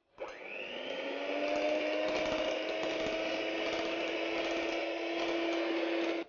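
Electric hand mixer fitted with dough hooks, kneading a sweet bread dough. The motor spins up just after the start, rising quickly in pitch, then runs with a steady hum and whine whose pitch creeps slightly higher as it works.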